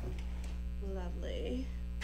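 Steady electrical mains hum, with a faint, brief voice about a second in.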